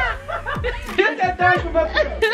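A woman laughing heartily, with voiced exclamations.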